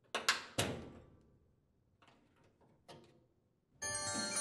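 Two sharp metallic snaps about half a second apart, each ringing briefly, as a flathead screwdriver pries steel spring clips out of a top-load washer's sheet-metal cabinet, followed by a couple of faint taps. A bright chime starts just before the end.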